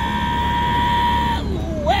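A man's long, high, held yell, one steady note that breaks off about a second and a half in, over the low running of a utility vehicle's engine.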